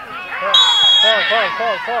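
A single sharp whistle blast lasting about half a second, starting about half a second in, over men shouting.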